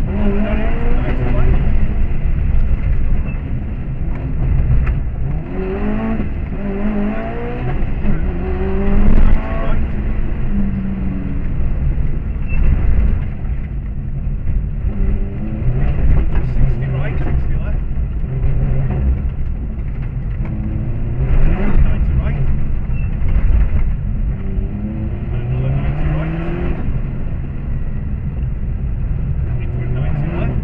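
Subaru Impreza rally car's flat-four engine heard from inside the cabin under hard driving, revving up several times as it accelerates hard and dropping back between the pulls.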